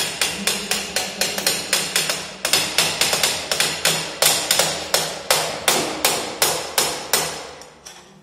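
Rapid, evenly paced hammer blows, about three a second, each with a short ring, easing off near the end.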